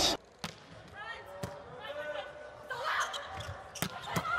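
A volleyball knocking sharply against the court floor and hands a few times, about a second apart at first and once more near the end, in a large hall with faint voices of players and crowd behind.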